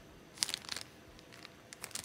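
Clear plastic packet crinkling as it is handled, with a few short crackles about half a second in and again near the end.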